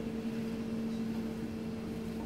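A steady machine hum, one constant low tone over a faint hiss, with no clear knocks or cuts.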